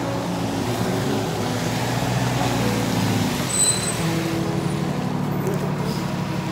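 Road traffic: a motor vehicle's engine running with a steady low hum, its pitch shifting slightly about halfway through.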